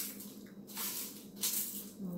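Dried shiso leaves being crumbled by hand into a plastic bowl, crackling and rustling in two short bursts in the second half.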